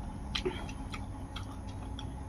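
Fingers mixing rice and curry in a metal bowl: a few irregular, small clicks and ticks of fingertips against the metal and of wet food being pressed, over a steady low room hum.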